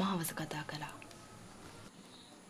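Soft speech for about the first second, then a low, quiet background.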